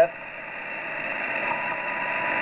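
Shortwave receiver tuned to lower sideband on the 80 m amateur band, between voice calls: a steady hiss of band noise, narrow and muffled because of the sideband filter, slowly growing louder. A faint steady whistle comes in about halfway through.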